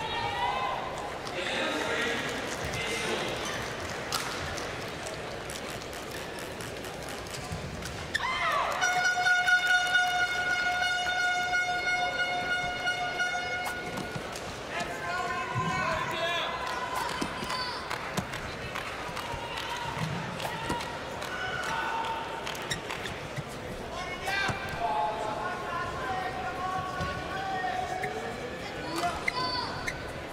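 Badminton arena ambience during the warm-up: racket strikes on a shuttlecock as scattered sharp knocks under indistinct, reverberant voices. About eight seconds in, one long steady horn-like tone sounds for roughly five seconds.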